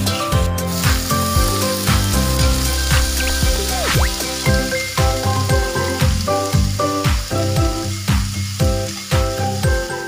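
Spices sizzling as they fry in a wok, stirred with a metal spatula; bamboo shoot strips go in about halfway through and are stirred into the oil. Background music with a steady beat plays throughout.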